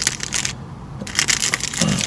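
Plastic protein-bar wrappers crinkling as they are handled, in two spells with a short lull about half a second in.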